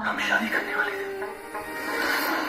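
Film trailer soundtrack playing: music with a voice over it.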